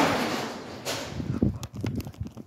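Handling noise from the recording phone as it tumbles and falls: a sudden rush of noise at the start, another about a second in, then rustling and several small knocks.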